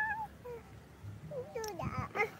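Short, high-pitched vocal calls: a brief held one at the start and a wavering, bending one near the end, with quiet in between.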